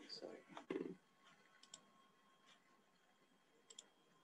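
Near silence with a brief murmur of voice at the start, then faint computer mouse clicks: a quick pair about one and a half seconds in and another pair near the end.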